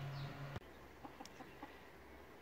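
A steady low hum, from the running egg incubator, stops abruptly about half a second in. Faint chicken clucking follows.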